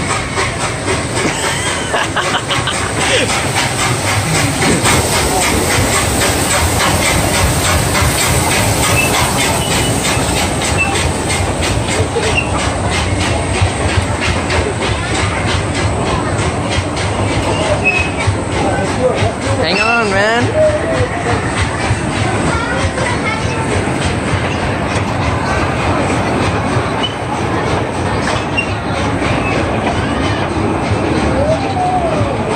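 Small amusement-park passenger train rolling past on a wooden trestle close by, its wheels clicking steadily over the rail joints. A wavering high squeal comes about twenty seconds in.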